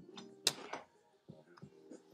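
A sharp knock of teaware being set down or bumped about half a second in, then a few faint handling sounds as a small teapot is wiped and polished by hand.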